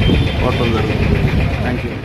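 A man talking over the steady low rumble of a motor vehicle's engine running.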